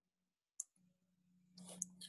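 Very faint sounds in near silence. About half a second in there is a sharp click, then a low steady hum with soft rustling noise, and a second sharp click near the end.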